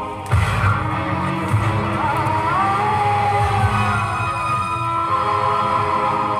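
Live stage music from an electronic keyboard: held chords over a low pulsing beat, with a sliding melody line about two seconds in. The music comes in sharply just after the start.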